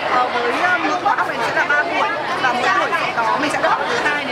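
A woman talking, with crowd chatter behind her.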